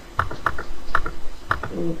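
Computer keyboard being typed on: several separate keystrokes spaced a third to half a second apart.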